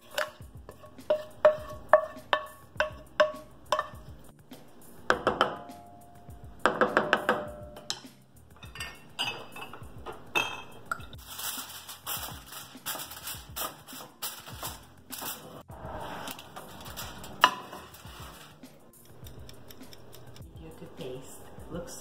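A metal spoon scrapes and taps against a stainless-steel sauté pan in quick runs of ringing clinks as the sauce is spooned out. From about eight seconds in, aluminium foil crinkles and crackles as it is pressed down over a baking dish.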